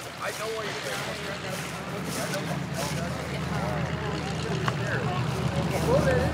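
A steady low engine rumble, growing louder towards the end, under the chatter of people talking.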